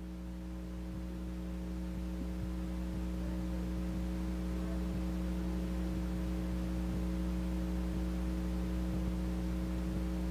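Steady electrical mains hum with a low buzz and a few overtones, over faint hiss, slowly growing louder.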